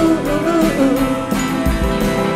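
Live band playing an instrumental passage: drums and cymbal keep a steady beat under guitar and a gliding melody line. A deeper, heavier drum beat comes in near the end.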